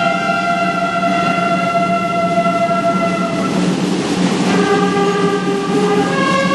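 Brass band holding long, steady chords, moving to a new chord about four seconds in.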